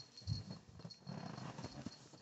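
Faint rustling of a robe and bedding, with irregular soft knocks and thuds from a handheld camera being moved as someone gets up out of bed.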